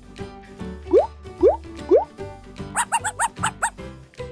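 Children's background music with added cartoon sound effects: three quick rising 'bloop' glides about half a second apart, then a rapid run of about seven short squeaky notes.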